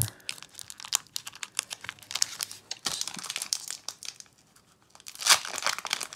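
Foil booster-pack wrapper being torn open by hand, crinkling loudly close to the microphone in dense crackles. It goes quieter for about a second about four seconds in, then a louder burst of crinkling comes near the end.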